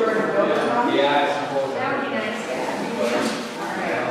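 Indistinct conversation of several people talking at once in a large room.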